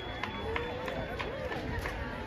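Indistinct chatter of spectators at an outdoor track meet, several voices overlapping with no clear words.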